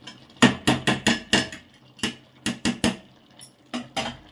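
Perforated metal skimmer ladle knocking against a large aluminium cooking pot: about a dozen sharp metallic knocks in quick clusters, loudest about half a second in.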